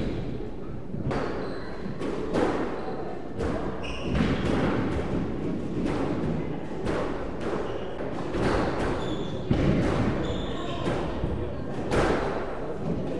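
Squash ball thuds and bounces with short shoe squeaks on a wooden court floor, repeating every half second to a second; voices now and then.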